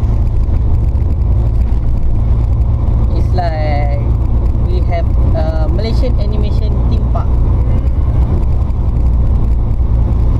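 Steady low rumble of a moving van's engine and road noise heard from inside the cabin. Brief voices come in between about three and six seconds in.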